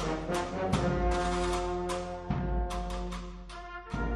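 An agrupación musical, a Spanish processional band of brass and percussion, playing a Holy Week march: held brass chords over regular drum strokes, easing off briefly near the end.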